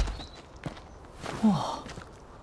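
Footsteps on stone paving, one at the start and another less than a second later. Near the end comes a short voice sound that falls in pitch.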